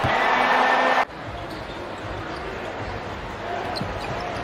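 Arena crowd noise after a made basket, cut off suddenly about a second in. Then quieter basketball game ambience: a ball dribbling on the hardwood court and players moving.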